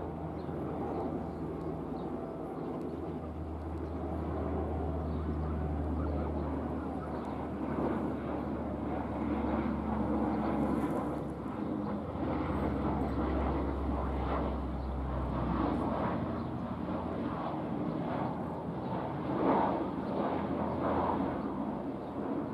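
A military transport plane's propeller engines droning at a distance: a steady low hum that swells and eases a little over the seconds.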